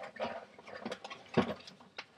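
Handling noise of a box and its packaging as a hair crimper is lifted out: scattered rustles and small clicks, with one louder knock about one and a half seconds in.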